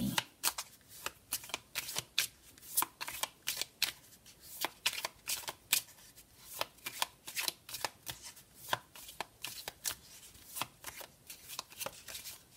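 A deck of Sibilla fortune-telling cards being shuffled by hand: a steady, uneven run of sharp card snaps and slaps, about two or three a second.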